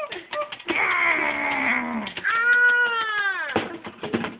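A stovetop whistling kettle whistles at the boil. First comes a rushing, shifting whistle for about a second and a half, then a steady whistle with overtones that sags in pitch and cuts off suddenly near the end.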